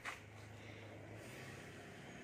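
A short rustle or knock at the very start, then quiet room tone with a faint steady low hum.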